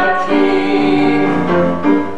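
Voices singing held notes over an accompaniment, with a short break in the sound near the end.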